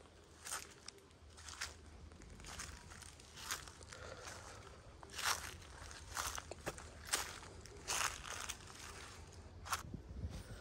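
Footsteps crunching on dry leaf litter and undergrowth, about one step a second, faint.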